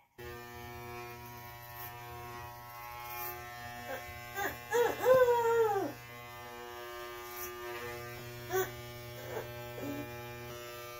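Electric hair clippers running with a steady buzz while cutting a child's hair.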